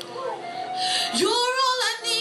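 Female gospel singer's amplified voice, sliding up into a high note about a second in and holding it with vibrato, with electric keyboard accompaniment underneath.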